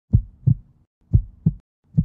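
Heartbeat sound effect: low double thumps in a lub-dub pattern, about one pair a second, two pairs and the start of a third.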